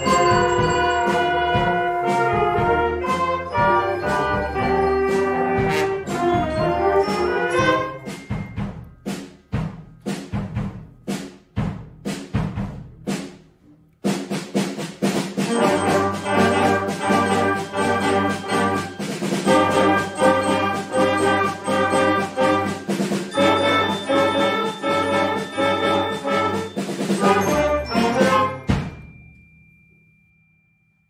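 School concert band of brass and woodwinds playing: a full sustained passage, then several seconds of short separate chords that die away, then the whole band comes back in and plays to a final chord that cuts off sharply about a second and a half before the end.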